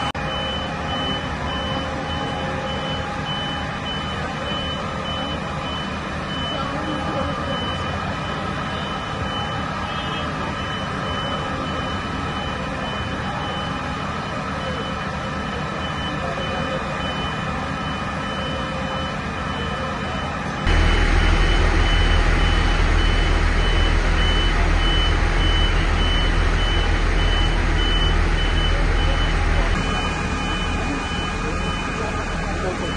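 Fire engine's engine running with a steady string of high beeps from a vehicle warning beeper. About twenty seconds in, the low rumble becomes suddenly louder and heavier.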